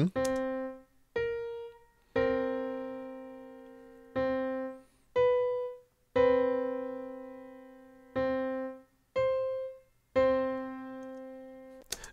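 Keyboard notes played from MIDI demonstrating three intervals in turn: minor seventh, major seventh, then octave. Each is heard as the low note, then the high note, then both sounded together and left to ring out.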